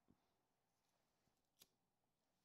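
Near silence: room tone, with one faint click about one and a half seconds in.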